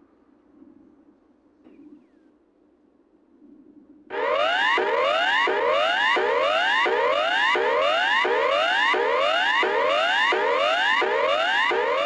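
Emergency broadcast alert tone: a loud rising sweep repeated about three times every two seconds over a steady high tone, starting suddenly about four seconds in after a faint lead-in.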